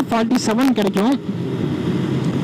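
Bajaj Pulsar 150's single-cylinder engine running steadily at a road cruise of about 55 km/h, mixed with wind rush on the microphone. A man's voice sounds over it for the first second.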